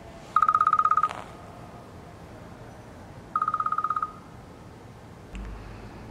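Smartphone alarm ringing: a fast-pulsing high beep in two short bursts about three seconds apart. A low rumble begins near the end.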